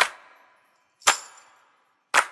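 Two sharp percussive sound-effect hits about a second apart, each with a short high ringing tail, opening a product promo's soundtrack.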